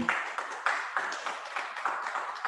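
Applause: hands clapping in a steady, dense patter.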